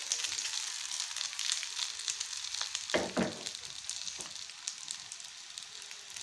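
Chicken seekh kebabs sizzling and crackling as they shallow-fry in hot ghee in a frying pan, while they are turned over. There is a brief louder low sound about halfway through.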